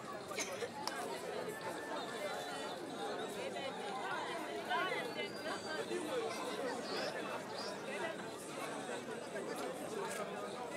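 Crowd of many people talking at once: steady chatter of overlapping voices with no single speaker standing out.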